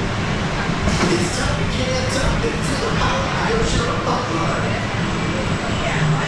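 Pipeline surf coaster train in the station, being dispatched: several short hisses of air between about one and four seconds in, over a steady low rumble as the train starts to roll forward. Voices are heard in the background.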